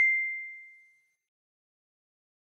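Incoming chat message notification: a single bright ding. It struck just before and rings out, fading away within about a second.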